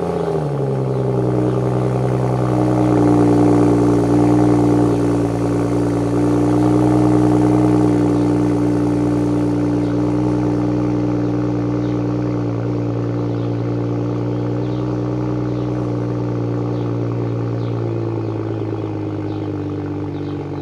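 BMW M235i's N55 3.0-litre turbocharged inline-six idling from the tailpipes just after a cold start, settling from the start-up flare in the first second into a steady fast cold idle. The pitch shifts slightly near the end.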